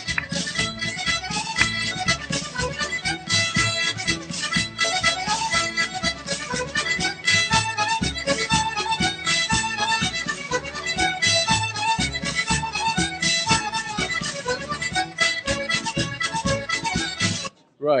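Recorded Scottish reel dance music with a quick, steady beat, cutting off suddenly near the end.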